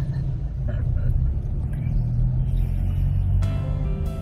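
Steady low rumble of a car cabin on the move, with background music over it; the music comes up more clearly near the end.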